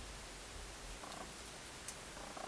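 Quiet room tone: a steady hiss with a low hum underneath, a brief faint buzz about halfway through and a small click near the end.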